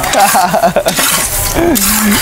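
Raw rice being dry-roasted in a large pan, the grains hissing and scraping steadily as they are stirred. A person laughs and speaks briefly over it.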